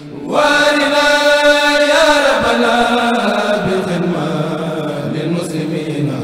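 A Mouride kourel, a group of men chanting an Arabic xassida (devotional poem) without instruments. A strong voice comes in just after the start on a long held note that slides down about two seconds in, and the chanting carries on.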